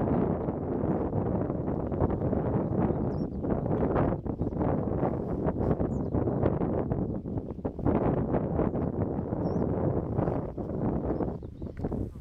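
Wind buffeting the microphone over the engine and propeller of a Softex V-24 light aircraft taxiing on a grass airfield, with a few faint bird chirps.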